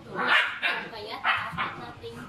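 Young puppy barking in a few short bursts, around half a second in and again after a second.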